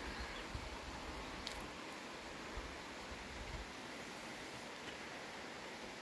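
Faint outdoor background: a steady soft hiss over a low rumble, with a light click about a second and a half in.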